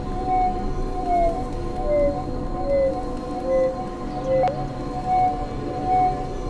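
Experimental electronic drone music from synthesizers: several held tones with short gliding notes sliding between them, swelling in loudness about every 0.8 seconds. A single sharp click sounds about four and a half seconds in.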